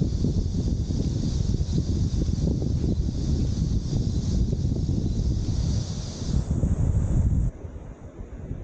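Wind buffeting the microphone: a loud, crackling rumble that drops away suddenly about seven and a half seconds in.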